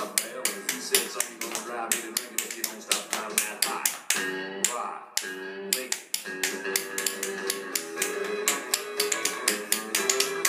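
Tap shoes striking a hard floor in quick, dense rhythmic taps, over a recorded upbeat country song. The taps thin out briefly about midway while the music holds longer notes, then pick up again.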